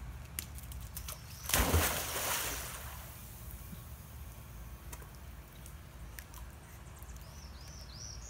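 A cocker spaniel leaping into a swimming pool: one loud splash about a second and a half in that dies away over a second or so, then faint water sloshing as he swims.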